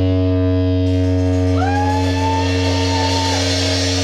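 Live band holding a sustained distorted electric guitar chord over a steady low bass drone, with no drums. About a second and a half in, a high note slides up and holds for a couple of seconds, then drops away.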